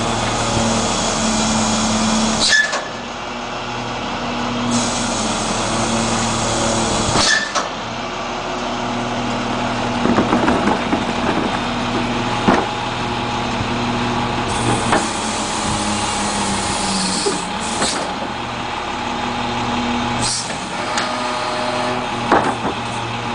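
Garbage-truck engine running steadily while the hydraulic cart tipper cycles. There are several stretches of hissing, each a couple of seconds long and each ending in a sharp clunk as the tipper arm stops, with a run of knocks midway as a plastic cart is hooked onto the tipper.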